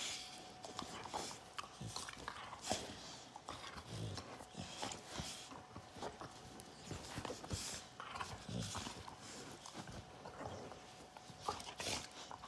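Two pit bulls play-fighting: scuffling on the couch and clicks of mouths and teeth, with two short low growls about 4 and 8.5 seconds in.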